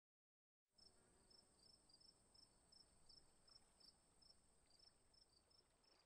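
Near silence. Under a second in, very faint short chirps begin, repeating two to three times a second, over a faint steady high tone.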